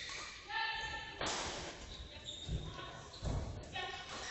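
Badminton doubles rally in an echoing sports hall: shuttlecock strikes, shoes squeaking and thudding on the court floor, and players' voices as the point ends.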